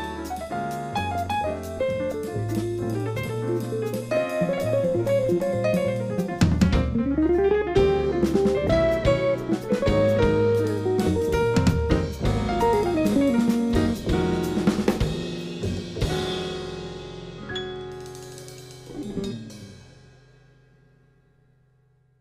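Jazz quartet of piano, upright bass, hollow-body electric guitar and drum kit playing the closing bars of a tune. Over the last several seconds the final chord rings and fades away, with one last accent just before it dies out.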